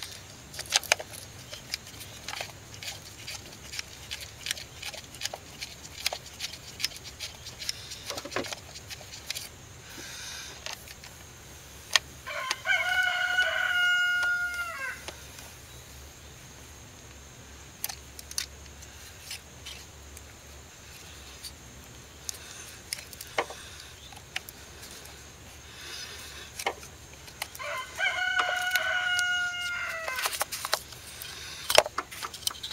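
A rooster crowing twice, each crow a single long call of about two and a half seconds, held level and then dropping at the end. Between the crows come scattered light clicks and taps of hand tools and parts on an engine.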